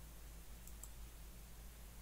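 Two faint computer mouse clicks close together, a little under a second in, over a low steady hum.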